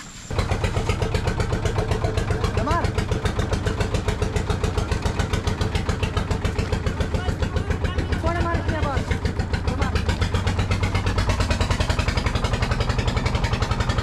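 A boat's engine running steadily with a fast, even pulse, heard close on the water.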